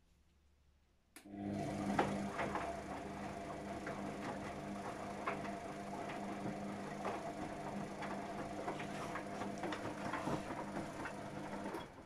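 Luxor WM 1042 front-loading washing machine turning its drum during a rinse: the motor starts about a second in with a steady hum, and water and laundry slosh and splash in the drum for about ten seconds before the motor stops abruptly near the end.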